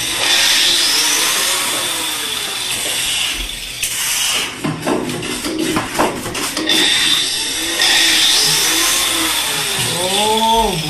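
Handheld electric angle grinder running with a steady high whine, with a burst of sharp knocks and clatter around the middle.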